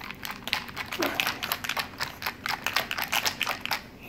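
Ice cubes rattling inside a hand-held cocktail shaker as it is shaken hard, a fast continuous rattle that stops just before the end.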